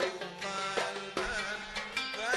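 Kuwaiti ensemble music with oud, a wavering melody line and a steady beat of short percussion strokes, about two to three a second.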